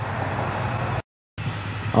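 Electric heat gun running, a steady even blowing noise. It cuts out completely for a split second about a second in.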